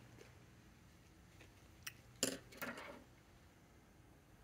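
Faint room tone, with a small click and then a brief rustle and tap a little after two seconds in as a paper ink swatch card is picked up off a tabletop.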